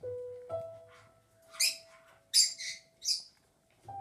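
Electronic keyboard notes sounded by a squirrel on the keys: a short note, then a single note held for about three seconds. Four short, high, hissy chirps come over the held note.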